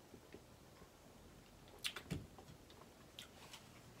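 Mostly near silence with a few faint, sharp mouth clicks and lip smacks, a small cluster about halfway through and two more near the end, as a sip of beer is swallowed and tasted.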